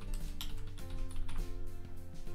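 Computer keyboard typing, a quick run of key clicks, over background music with steady held notes.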